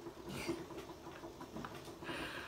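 Faint rustling and scratching of hands and hair against a hooded hair steamer as a head settles under the hood, with a brighter rustle about a third of a second in, over a low steady hum.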